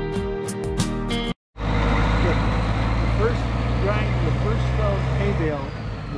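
About a second of guitar background music, then a short break and the steady hum of a nearby diesel tractor engine idling, which drops away shortly before the end.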